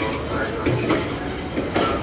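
Passenger coaches of an arriving train rolling past at the platform, running with a steady rumble broken by a few sharp wheel knocks over the rail joints.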